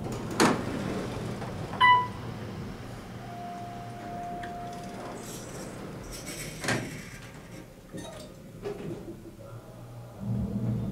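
Otis hydraulic elevator bank: a low steady hum runs throughout while a car goes up. A short chime sounds about two seconds in, a steady tone follows a little later, and there is a door knock or slide near seven seconds.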